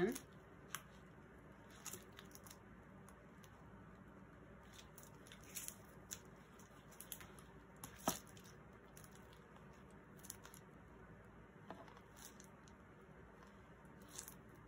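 Faint, scattered clicks and rustles of small parts being handled while an attachment is tried on the end of a tool, with one sharper click about eight seconds in.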